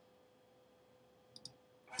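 Near silence with a faint steady hum, broken by two quick computer-mouse clicks about a second and a half in.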